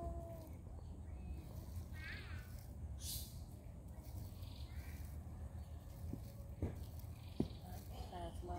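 Outdoor background with a steady low rumble, a faint short falling call about two seconds in, a brief hiss just after, and two sharp clicks near the end.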